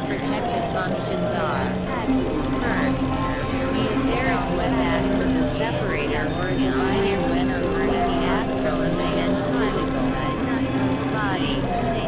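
Experimental electronic drone music: held synthesizer tones with slow, falling pitch glides and quick chirping sweeps, layered over a dense noisy bed.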